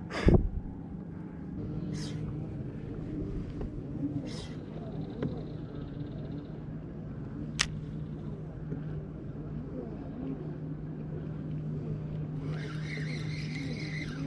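Bass boat's bow-mounted electric trolling motor running with a steady hum. A knock sounds right at the start and a sharp click about halfway through.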